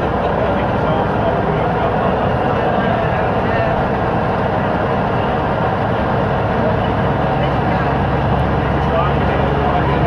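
Leyland Titan PD2 double-decker bus's diesel engine and running gear heard from inside as it travels at a steady speed, with a continuous rumble. About seven seconds in, a steadier low hum from the engine comes through.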